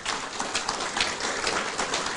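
An audience applauding, many hands clapping at once.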